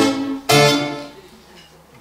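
Twelve-string acoustic guitar strummed as the lead-in to a song: a chord rings at the start, another is strummed about half a second in and is left to fade away.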